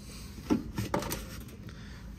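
Two light knocks as multimeter test probes are handled and set against a contactor's terminals, over a steady low background hum.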